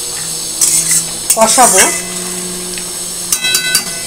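A steel spoon stirring and scraping thick masala paste in a steel wok, with clinks of metal on metal. Near the end come several sharp taps of the spoon on the pan that ring briefly.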